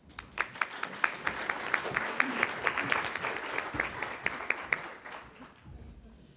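Audience applauding as a talk ends. Dense clapping starts just after the opening and dies away about five seconds in.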